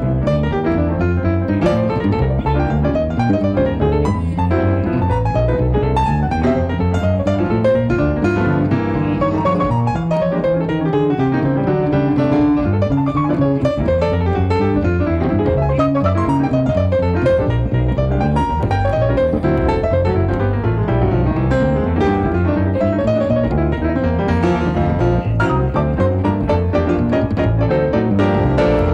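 Live jazz on grand piano and plucked upright double bass: the piano plays a continuous stream of quick melodic runs over a steady bass line.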